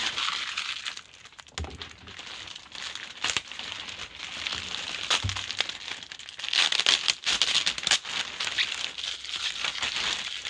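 A thin clear plastic bag crinkling and crackling as it is pulled and worked off a box by hand, in irregular bursts, loudest about two-thirds of the way through. A couple of soft low knocks from the box being handled.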